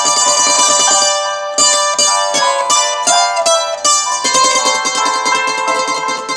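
Solo acoustic plucked string instrument with many strings, played as a picked melody over chords. The plucking grows denser in the second half.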